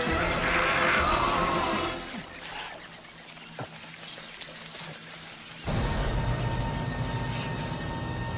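Horror film soundtrack: wet, squelching sounds of the slithering alien slugs under a tense music score. The sound drops away about two seconds in, and a low held music drone swells in suddenly about two-thirds of the way through.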